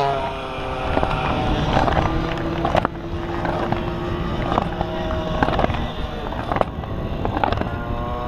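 Racing moped engines on the track, a steady distant drone after one has just passed, with low wind rumble on the microphone and sharp cracks from a checkered flag being waved.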